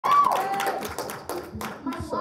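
Audience clapping and cheering, with scattered claps and a loud voice calling out at the start.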